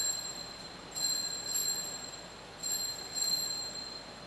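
Altar bell rung at the elevation of the consecrated host: a high, bright ringing in three short bursts, each a double shake, coming about a second and a half apart.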